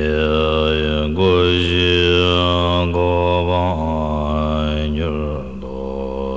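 A deep, low voice chanting a Tibetan Buddhist prayer to Guru Rinpoche in a slow mantra style. Each phrase is held on one steady low pitch while the vowels slowly change, with short breaks about a second in, near four seconds and around five and a half seconds.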